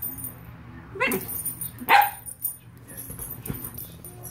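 Two dogs play-fighting, with two short, sharp barks about one and two seconds in; the second is the louder.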